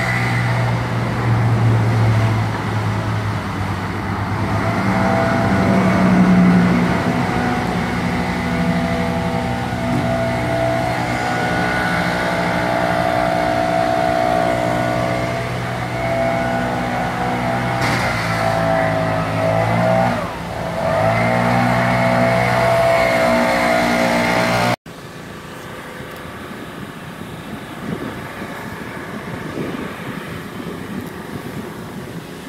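An engine running steadily, with its speed dipping and changing a few times about two-thirds of the way through. It stops abruptly near the end, leaving a quieter outdoor background.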